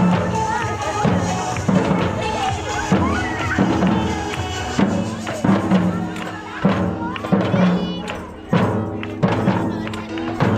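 Batucada drumming: two large metal surdo drums beaten with mallets in a repeating rhythm, with a hand-held frame drum, over the voices of a crowd.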